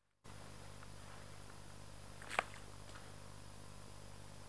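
Faint, steady hiss of a still forest, with one short sharp sound about two and a half seconds in.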